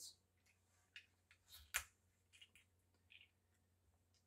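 A few light clicks and taps from small plastic nicotine shot bottles being picked up and handled on a table mat, the loudest a single sharp click a little under two seconds in.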